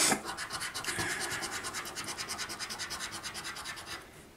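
A coin scraping the scratch-off coating from a paper 20X Cash scratchcard in fast back-and-forth strokes, about ten a second, fading near the end.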